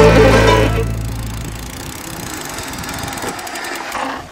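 Fiddle-and-guitar music fading out over the first second or so, leaving a mountain bike rolling slowly over asphalt. The sound of the bike is an even rolling noise, with a rapid ticking near the end from the rear freewheel as it coasts.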